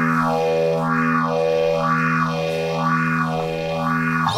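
Electric guitar holding a sustained chord through a sweeping modulation effect, the tone rising and falling in a steady wave about once a second.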